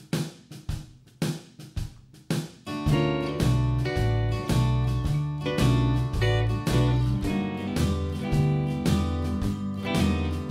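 Country shuffle backing track that opens with drums alone. From about three seconds in, bass and a Fender Telecaster electric guitar come in, the guitar playing major sixth chords slid into from below to imitate a lap steel guitar.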